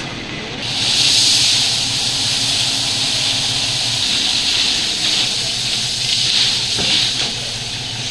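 Gravel pouring off the tipped body of a dump truck: a steady rushing hiss that swells about half a second in, with the truck's engine running low underneath.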